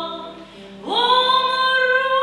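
A woman singing a Russian romance to her own classical guitar accompaniment: one held note dies away, and after a short breath a new long note scoops up into pitch about a second in and is held.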